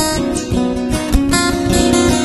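Music led by a strummed acoustic guitar, with sustained pitched notes over a regular beat.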